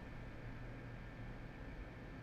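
Small portable PTC ceramic fan heater running on high: a steady hiss of fan airflow with a low hum underneath.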